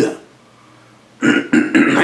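A man's speaking voice: the end of a word, about a second of quiet room tone, then his voice starting again.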